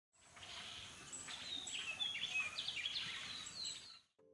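Faint birdsong over a soft outdoor hiss: a run of short chirps and whistles that builds about a second in and fades just before the end.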